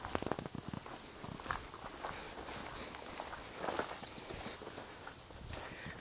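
Footsteps through tall weeds and overgrown grass, with irregular crunches and plants swishing against legs as people push along a path.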